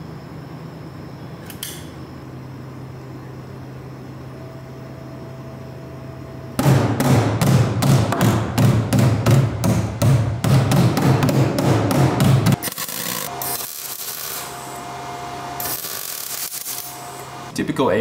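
Hammer bashing the thin body steel of a Toyota Chaser: a fast run of loud strikes, about four a second, starting about six and a half seconds in and lasting about six seconds. The seam is being beaten flat ready for seam sealer.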